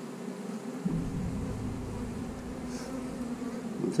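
A colony of honey bees buzzing steadily around an open hive and a lifted frame, a hum of several steady pitches. A low rumble joins it about a second in.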